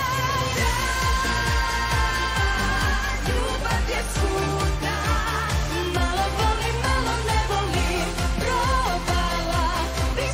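Women's voices singing a Serbian pop song live into handheld microphones over a dance-pop backing track with a steady kick-drum beat of about two beats a second.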